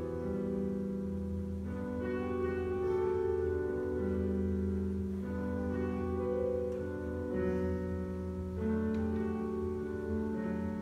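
Pipe organ playing a slow piece in sustained chords that change every second or two over a steady held bass note.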